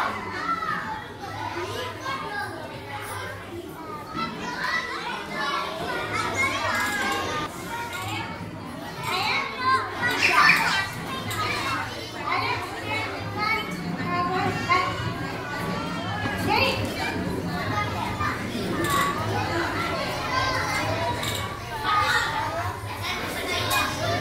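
Many children's voices chattering and calling out at once in a large hall, a continuous babble with a louder burst about ten seconds in, over a faint steady low hum.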